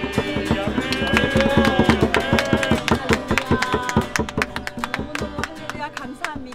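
Group singing a worship song to two strummed acoustic guitars, with hands clapping along in a quick, even rhythm.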